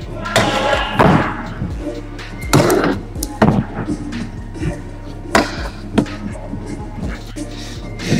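Background music, with several sharp knocks and clatters from a stunt scooter's deck and wheels hitting and grinding on rails, boxes and ramps, over a steady low hum.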